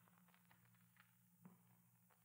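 Near silence: a faint steady low hum in a pause between lines.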